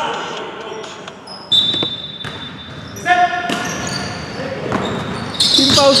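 Basketball bouncing on a hardwood gym floor during play, echoing in a large hall, with a steady high whistle-like tone lasting about a second and a half from about a second and a half in. Players' voices shout near the end.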